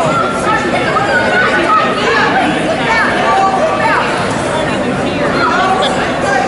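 Crowd chatter: many people talking over one another at once, steady throughout.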